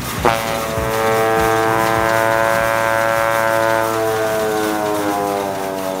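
A homemade horn played by blowing through a green garden hose: one long horn note that starts abruptly just after the start, sinks slowly in pitch and tails off near the end.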